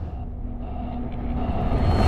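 Cinematic intro sound design: a low, rumbling drone with a few held tones that slowly swells after a heavy hit, building toward the next burst of theme music.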